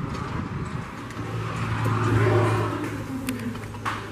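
A motor vehicle driving past, its sound swelling to a peak about halfway through and then fading.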